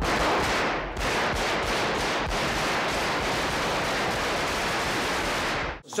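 Automatic gunfire from Guardia Civil submachine guns fired inside a large parliament chamber. It is a dense, unbroken clatter that fills the hall and stops abruptly near the end.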